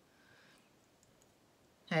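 A couple of faint clicks from a small plastic Lego dolphin piece being handled between the fingers, otherwise near silence; a man's voice starts at the very end.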